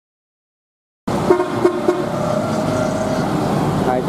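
Road traffic with vehicle horns, starting abruptly about a second in: three quick short toots, then a longer steady honk lasting about a second.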